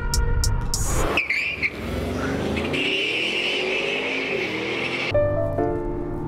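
Background music with a drum beat, cut off about a second in by a car accelerating hard off a drag-strip start line: a rushing noise with an engine note that rises steadily for about four seconds. Music with held, piano-like notes comes back near the end.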